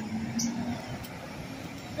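Steady background rumble of semi-truck traffic in a container port yard, with a low hum through the first part.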